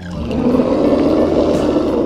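A dinosaur roar sound effect: one long, growling roar that builds over the first half second and holds before fading near the end.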